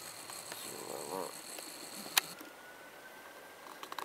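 A handheld camera being handled, with one sharp click about two seconds in. Behind it is a quiet outdoor background with a faint short call a little after one second.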